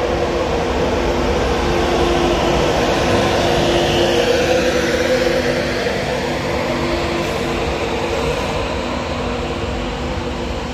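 Class 91 electric locomotive passing close by at the head of its train, with a steady electric hum and a high whine that is loudest about four seconds in, then its coaches rolling past.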